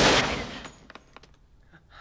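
A single loud handgun shot right at the start, ringing off briefly and dying away within about a second.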